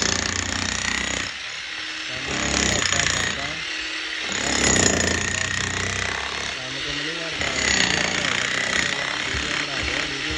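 Corded electric demolition hammer breaking up concrete paving, its chisel bit hammering continuously and rapidly, swelling louder a few times as it bites in.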